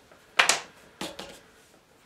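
Hard painting tools knocked against each other or set down on a hard surface: a sharp clatter about half a second in, then a lighter click at about one second.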